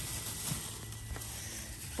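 Faint rustling of plastic produce bags, with a couple of soft knocks, as bagged vegetables and fruit are handled over a low steady hum.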